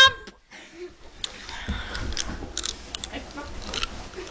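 Scuffling with scattered short knocks and thuds from two people wrestling.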